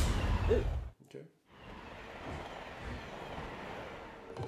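Film trailer soundtrack: loud music that cuts off abruptly about a second in. A brief hush follows, then a much quieter steady background sound.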